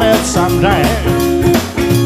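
Live blues-rock band playing: electric guitars, drums and harmonica, with notes bending in pitch.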